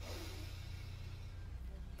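A woman's slow, deep breath in through the nose: a faint hiss that fades over about a second and a half. A steady low hum runs underneath.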